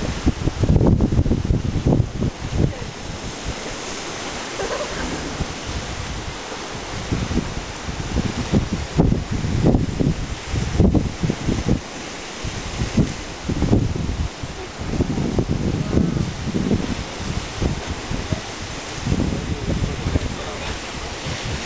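Ocean swell surging and breaking against rocks, with wind buffeting the microphone in irregular gusts.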